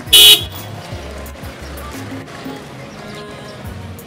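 One short, loud car-horn toot right at the start, over background music with a repeating low beat.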